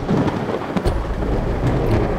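Thunderstorm sound: steady heavy rain, with a deep rumble of thunder that sets in just under a second in.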